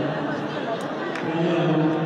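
A man's voice speaking or calling out in long, drawn-out phrases, echoing in a large hall.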